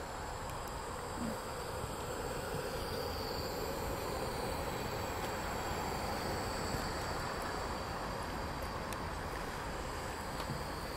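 Model steam boat's gas-fired boiler and small two-cylinder steam engine running with a steady hiss and no distinct beat. It is running quietly, with its burner low on gas.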